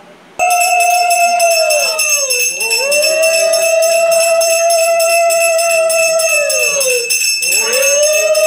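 A conch shell blown in long steady blasts, each sagging in pitch as the breath runs out, starting suddenly about half a second in; over it a hand bell is rung rapidly and without pause, the conch-and-bell sound of Hindu puja worship.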